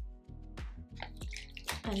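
Background music with a steady beat and a bass line, and a woman's voice starting to speak near the end.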